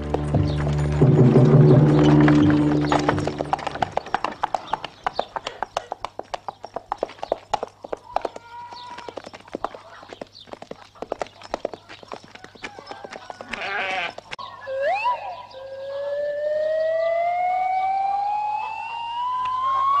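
Film music chords, then a run of irregular knocks and clatter. Near the middle comes a short sheep bleat, and a long, smoothly rising whistle-like glide fills the last few seconds.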